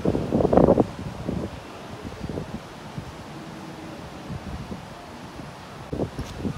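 Steady low background rumble with wind-like noise on the microphone, and one short louder burst about half a second in.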